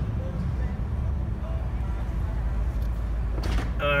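Ram Power Wagon's 6.4-litre Hemi V8 idling, a steady low rumble heard inside the cab, while the truck holds a cable-tethered 5,000-pound wall it has just lifted. A brief rustle or knock comes about three and a half seconds in.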